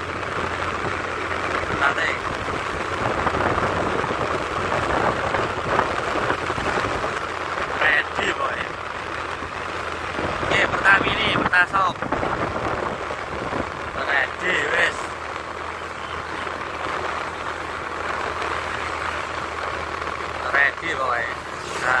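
Steady running and road noise from a vehicle moving along a road, with a few short bursts of voices over it.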